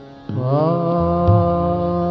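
Male Hindustani classical vocal in raag Basant Mukhari: over a steady drone, the singer glides up into a long held note about a third of a second in and sustains it. Low accompaniment comes in under the note about a second in.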